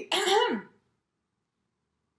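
A woman's short two-part throat-clearing 'ahem', pitched and rising then falling, ending within the first second, then silence.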